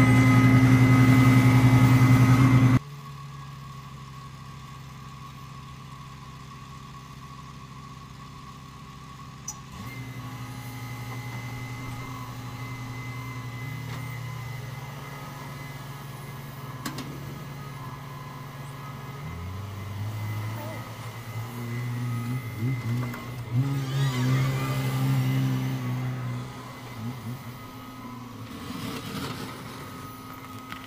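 Diesel engines of heavy snow-removal machinery: a loud, steady engine close by for about the first three seconds, cutting off abruptly, then a Hitachi wheeled excavator's engine running steadily, its pitch stepping up and down and swelling in the second half as its bucket scoops snow.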